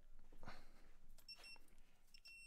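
Non-contact voltage tester giving a few short, faint, high-pitched beeps about a second and a half in, its signal that it senses live voltage at the wire.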